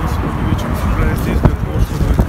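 A man speaking, over a steady low rumble.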